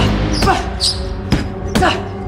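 Punches landing on a padded punching bag: three sharp hits, about half a second in, past the middle and near the end, over background music with a heavy bass.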